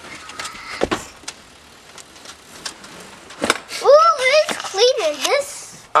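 A few sharp clicks and knocks of hands working at the rear seat inside a car. About two-thirds of the way through comes a child's high voice for about a second and a half, and this is the loudest sound.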